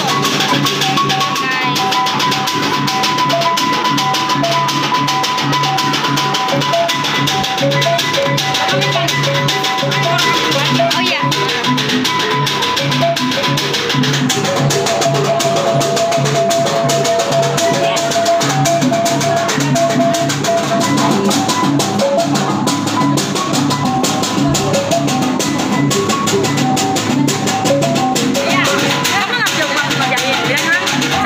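Background music with a steady beat and a melody line of held and stepping notes.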